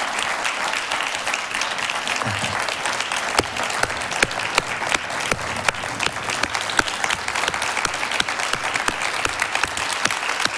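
Large audience applauding, a dense steady clatter of hand claps, with louder single claps standing out from about three seconds in.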